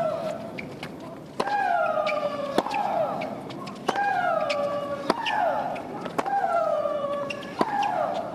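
Women's tennis rally: a racket strikes the ball about every second and a bit, and each shot comes with a long shriek from the hitter that falls in pitch. The two players' shrieks alternate, one voice sliding down steeply and the other holding a flatter two-note wail.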